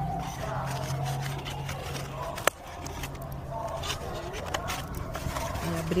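Scissors snipping and scraping through an egg tray as pieces are cut out, with one sharp snap about two and a half seconds in. A steady low hum runs underneath.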